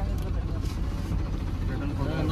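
Steady low rumble of a passenger vehicle's engine and road noise heard from inside the cabin while it drives.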